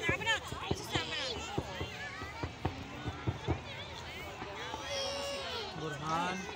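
Fireworks going off in a string of irregular sharp pops and bangs, over the chatter of a crowd of onlookers.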